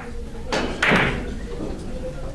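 Russian pyramid billiard balls knocking as they roll after a shot: a sharp click about half a second in, then a louder knock just under a second in.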